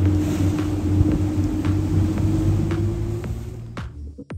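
Motorboat engine running under way, a steady drone with wind and water noise over it. It fades near the end as electronic music with a beat comes in.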